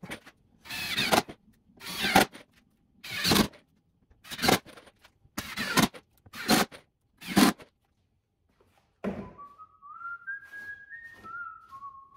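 A series of about eight short noisy bursts, roughly one a second, from work on a glued-up OSB panel at a workbench, followed near the end by a man whistling a short tune that steps up and down.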